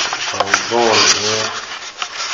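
A stack of paper banknotes rubbing and rustling right against the phone's microphone as it is handled, a rough scraping noise with a few sharp clicks. A short low hum-like voice sound comes in the middle.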